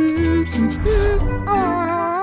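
Light children's background music: a simple melody over a bass line, joined about a second and a half in by a wavering, vibrato-like tone.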